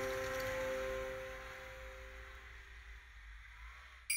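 A held musical chord of several steady tones slowly fading away, gone about two and a half seconds in, over a faint low rumble.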